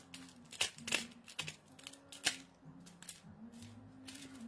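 Paper jewelry card packets being handled and adjusted by hand: a handful of sharp clicks and light paper rustling as the necklaces are straightened in their packets.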